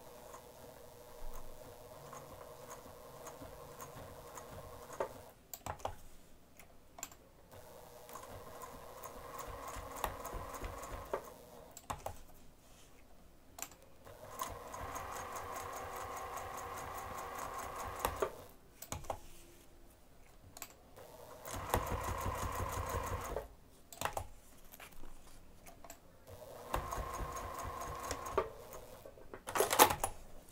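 Domestic electric sewing machine stitching in short runs, about five of them, each lasting a second or three. It stops and starts as a small zipper tab is edge-stitched around its corners, with small clicks in the pauses between runs.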